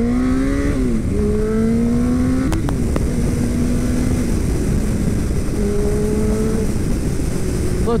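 2000 Yamaha R1's inline-four engine under hard acceleration: a rising pitch, then two quick upshifts, one about a second in and one near three seconds, each dropping the pitch before it climbs again, then a steadier run at speed.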